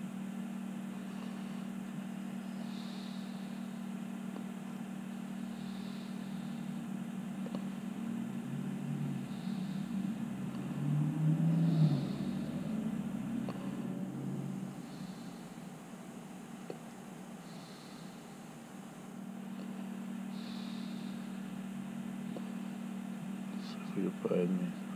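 A fan running with a steady low hum, although its switch is off. Near the middle there is a louder stretch of low murmuring, and faint soft puffs come every few seconds.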